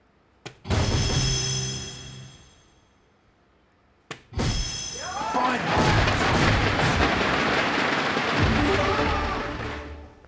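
A soft-tip dart strikes the electronic dartboard with a sharp click, setting off a bright electronic sound effect from the machine. A second click about four seconds in sets off another effect and loud crowd cheering and shouting in a large hall, which fades near the end.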